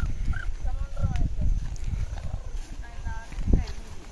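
Wind gusting on the microphone as a low, uneven rumble, with faint distant voices about a second in and again about three seconds in.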